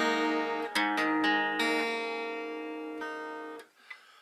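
Acoustic guitar strumming an A2 chord and changing to A major, strings 5 through 1, with a few strums in the first second and a half. The last chord rings and fades, then is damped about three and a half seconds in.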